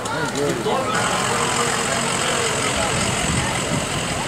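Shuttle bus driving past close by, its engine and tyres a steady rushing noise that sets in about a second in, with people talking nearby.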